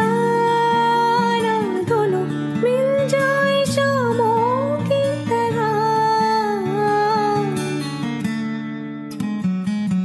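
A Hindi romantic film song sung by a woman, with long held, gliding notes over a guitar-led accompaniment. The music thins out near the end.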